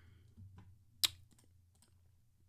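Computer keyboard keystrokes: one sharp click about a second in, then a few lighter clicks, over a low steady hum.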